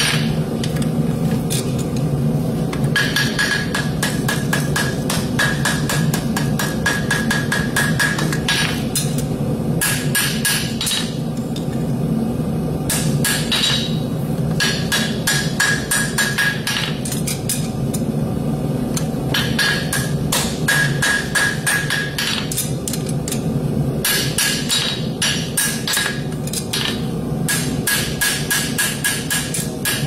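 Farrier's hammer striking a hot steel horseshoe on an anvil, over the horn and on the face, in runs of quick blows with short pauses between them. A steady high ring sounds through many of the runs. The shoe is being hot-shaped to fit a distorted hoof.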